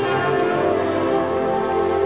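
Choral performance in a church: sustained, held chords of music between sung phrases.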